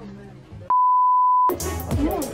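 A censor bleep: one steady, single-pitched beep lasting most of a second, starting a little before the middle, with all other sound cut out beneath it.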